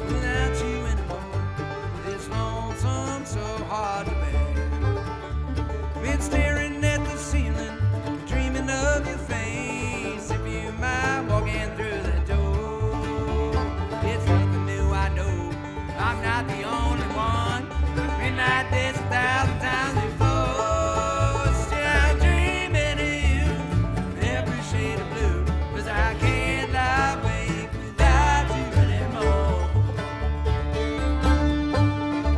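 Live bluegrass string band playing a tune together: banjo, fiddle, acoustic guitar, mandolin and upright bass, with the bass notes pulsing steadily underneath.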